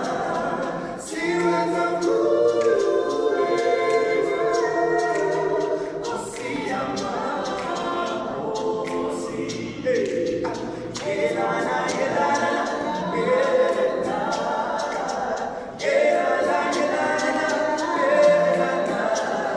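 A small group of men singing a cappella in close harmony, unaccompanied, with short breaks between phrases.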